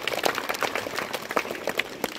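A small group of people clapping their hands in brief, uneven applause: a quick scatter of sharp, overlapping claps.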